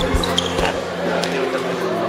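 Several irregular thumps of a handball bouncing on a sports-hall floor, mostly in the first second, over the held notes of a pop song.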